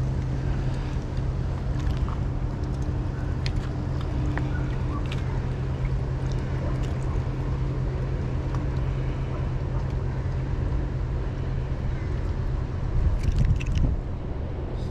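A steady low motor hum with faint clicks and rustles over it, growing louder and noisier for about a second near the end.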